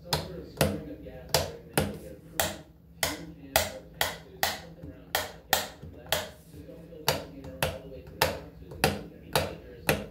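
Fingers clicking and tapping plastic rocker light switches on a wall plate: a sharp click nearly twice a second, evenly paced.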